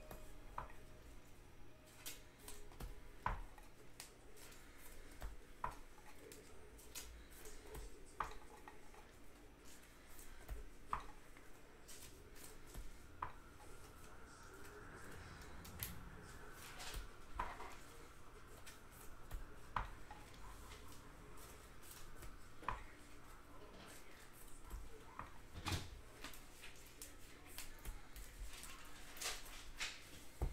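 Baseball trading cards being sorted by hand on a table: faint, irregular clicks and taps of card stock, a few every few seconds, over a low steady hum.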